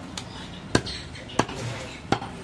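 A heavy butcher's chopping knife chopping through goat ribs onto a wooden log block. Two sharp chops come about two thirds of a second apart, after a lighter tap at the start.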